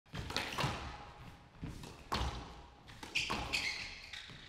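Squash rally on a glass court: several sharp hits of racket and ball against the walls, with heavy footfalls and a high shoe squeak near the end.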